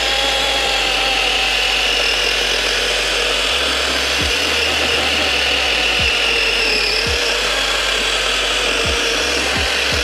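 DeWalt DCCS620 20-volt cordless chainsaw with a 12-inch bar, on a 2 Ah battery, cutting steadily through a railroad tie. A continuous electric motor whine runs with the chain rasping through the wood, its pitch dipping slightly and recovering as the load changes.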